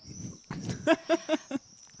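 A woman laughing briefly, a quick run of about four 'ha' pulses starting about half a second in.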